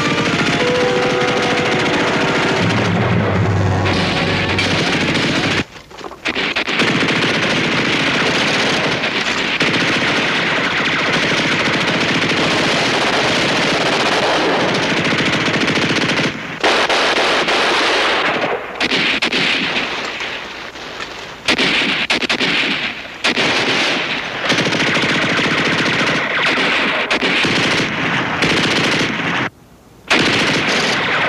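Sustained gunfire of a staged battle, mostly machine-gun fire, near-continuous and loud, with brief breaks a few times. The orchestral score fades out under it in the first few seconds.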